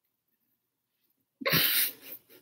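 A single sudden, loud burst of breath from a woman close to the microphone, lasting about half a second and coming about a second and a half in.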